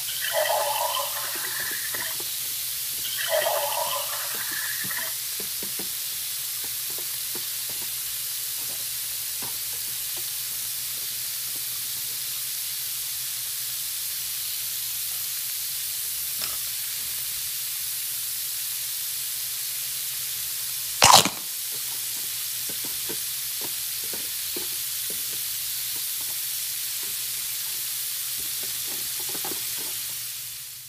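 Toy barbecue grill's electronic sizzling sound effect, a steady hiss through a small speaker. Two short electronic sound bursts come near the start. Light plastic clicks from toy food and a plate being handled run throughout, with one sharp click about two-thirds of the way through.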